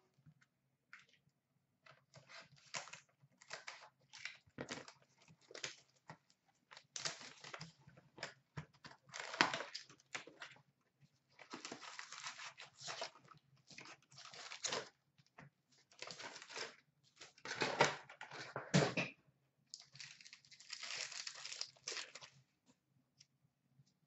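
Hands opening a cardboard hobby box of hockey cards and tearing open the card packs inside: a long run of short, irregular tearing and crinkling noises, loudest about halfway through and again a few seconds before the end.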